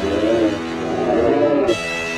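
Cat yowling in a territorial standoff: a low, wavering moan that rises and falls in pitch, with music coming back in near the end.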